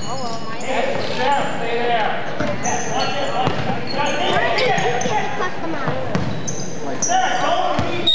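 Basketball being played on a hardwood gym floor: sneakers squeak in many short, high chirps and a ball bounces, amid players' and spectators' voices in the large hall.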